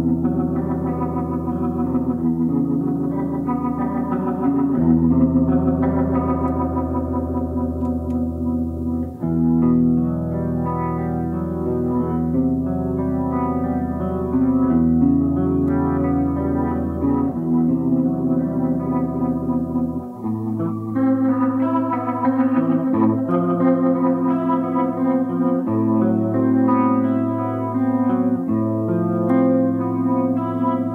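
1965 Gibson SG Junior electric guitar played through amps and effects pedals: slow, atmospheric chords held and left ringing, changing every few seconds.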